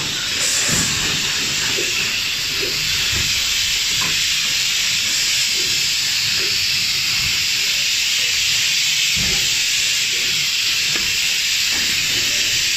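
Steady, loud air hiss from a running rigid box making machine, unbroken throughout, with faint low knocks underneath.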